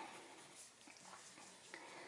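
Near silence, with faint scratching of a brown crayon being rubbed lightly on paper.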